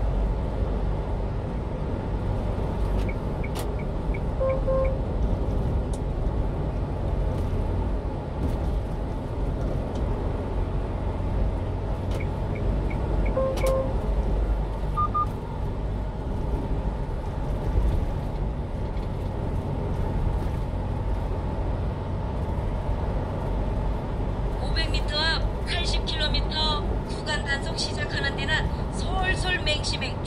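Steady low engine and road rumble inside the cab of a 1-ton refrigerated box truck cruising on a highway. Short electronic beeps sound about four seconds in and again about nine seconds later. A high, fluttering chirr joins in for the last few seconds.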